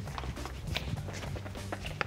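Quick footsteps of two people in sneakers hurrying across a wooden floor, a scatter of short taps over background music with a steady low bass.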